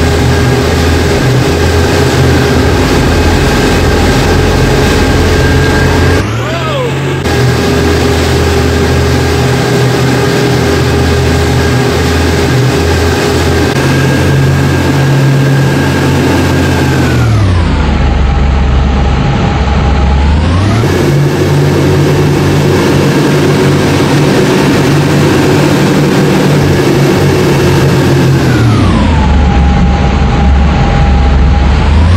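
Towing motorboat's engine running at a steady speed over rushing water. Twice the whole sound slides down in pitch, as when the footage is slowed: once about two-thirds of the way in, coming back up a few seconds later, and again near the end.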